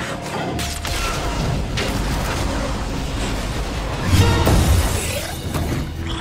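Action-film sound mix: metallic crashing and shattering over a music score, with a heavy low boom about four seconds in.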